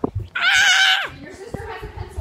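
A child's high-pitched squeal with a wavering pitch, lasting under a second, followed by children's chatter.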